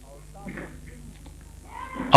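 Pause in a man's sermon speech: a steady low hum, with a few faint short pitched sounds about half a second in, and his voice starting again near the end.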